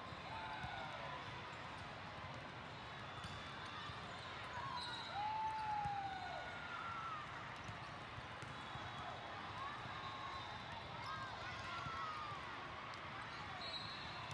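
Athletic shoes squeaking on a sport court during a volleyball rally, a few short squeaks with the loudest about halfway through, over the steady chatter and din of a large hall.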